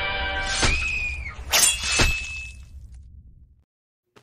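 Short horror-style sound-effect stinger: a held musical chord over a low rumble, a rising tone and three sharp hits about a second in, then fading out.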